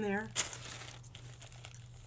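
Thin plastic carrier bag crinkling as hands smooth and shift it flat on paper: one sharp crackle just under half a second in, then faint, irregular rustling.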